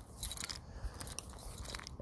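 Faint scattered clicks and crackles over low background noise, with one louder click near the start.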